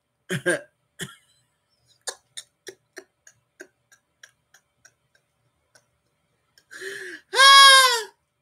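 A short vocal sound, then a run of soft, evenly spaced ticks, about three a second, fading away, then a loud drawn-out wail like crying near the end.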